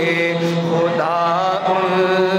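A man singing a naat into a microphone, unaccompanied chant-like vocal with long held notes that waver and bend in pitch.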